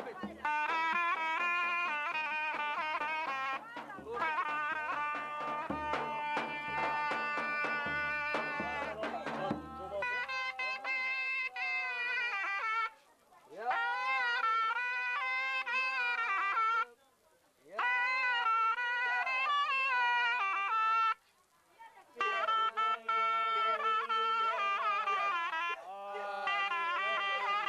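Turkish folk music: for about the first ten seconds a zurna plays over irregular low drum thumps, then a man sings a bozlak in long wavering phrases, each opening with an upward glide and separated by short pauses for breath.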